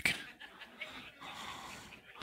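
Faint, scattered laughter from a church congregation.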